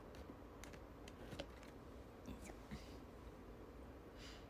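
Faint scattered light clicks and taps: fingers handling and tapping the smartphone that is streaming, close to its microphone, over a quiet room. A soft breath comes just before the three-second mark.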